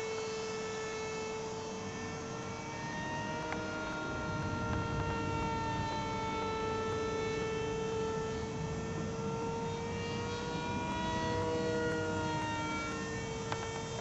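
Radio-controlled model aircraft flying high overhead: the steady whine of its motor and propeller, its pitch drifting slightly up and down as it flies.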